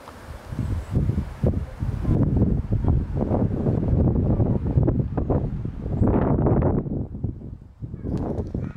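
Wind buffeting the microphone in gusts: an uneven low rumble that grows louder about two seconds in and surges again near the end.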